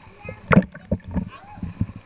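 Pool water sloshing and splashing irregularly against a camera held at the waterline, stirred by a small child paddling in armbands, loudest about half a second in; voices can be heard faintly behind it.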